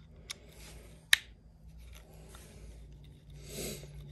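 Small Wiha T6 Torx screwdriver backing a tiny screw out of a knife's carbon fibre handle scale: faint scraping of the bit in the screw head, with a light tick and then a sharp click about a second in. A soft hiss comes near the end.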